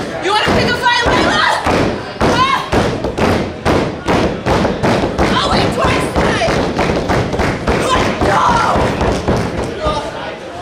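Repeated thuds on a wrestling ring's canvas mat. A woman's voice shouts over them.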